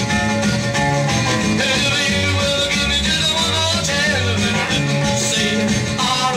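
Rockabilly record playing from a 45 rpm vinyl single on a turntable: full band music with a bass line moving in steady steps.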